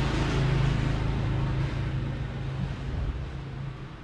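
A steady low motor hum with a rushing noise, fading slowly toward the end.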